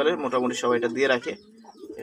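Caged zebra finches calling, a run of short pitched notes, mixed with a voice.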